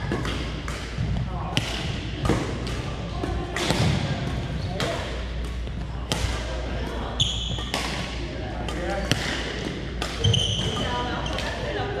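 A badminton rally in a large gym: a string of sharp racket hits on the shuttlecock, about one every second or so, with two brief shoe squeaks on the hardwood floor about seven and ten seconds in, over the echoing chatter of the hall.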